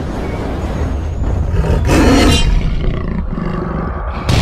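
Cinematic intro sound effect of a big cat's roar over a deep rumble, the roar loudest about two seconds in.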